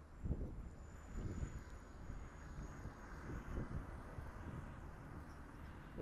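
Distant highway traffic, a steady wash of truck and tyre noise, with wind gusting on the microphone.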